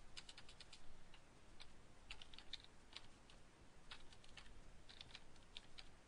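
Computer keyboard typing: faint, irregular keystrokes as code is entered.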